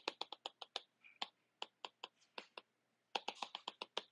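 Stylus tip tapping on a tablet screen in quick short strokes, drawing dashed lines: a string of sharp, light clicks, bunched in fast runs at the start and again near the end, sparser in between.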